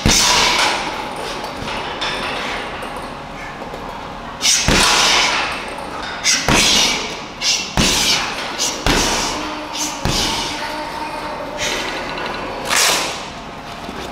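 Boxing-glove punches landing on a hanging heavy bag, sharp thuds with room echo. One strike comes right at the start, then after a pause of about four seconds further punches land irregularly, about one to two seconds apart.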